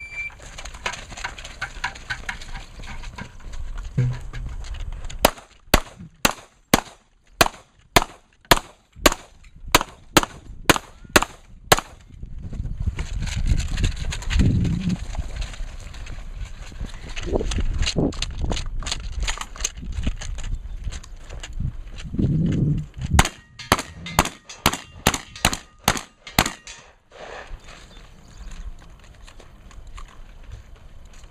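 A handgun fired in a rapid string of about fifteen shots, about two a second, then a stretch of rushing noise, then a second quick string of about ten gunshots near the end.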